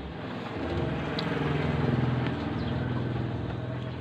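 A motor vehicle's engine going past, swelling to its loudest about halfway through and then slowly fading.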